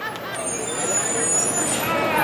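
Street crowd chatter with traffic noise around it. About half a second in, a high, thin, steady whine starts and holds to the end.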